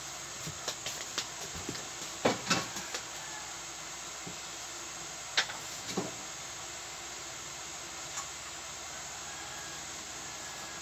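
Steady background hiss with a few light clicks and knocks, a cluster in the first three seconds and a sharper single one about five and a half seconds in.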